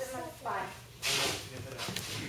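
A person's voice, not made out as words, with a short hissing noise about a second in and a few faint clicks near the end.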